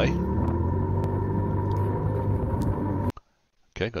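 Polaris RZR side-by-side engine running steadily, heard through the hood-mounted camera's microphone as the vehicle creeps forward. It cuts off suddenly about three seconds in.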